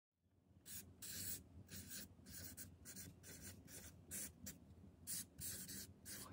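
Pen writing on paper: a quick series of short, faint scratching strokes, about two or three a second, starting under a second in.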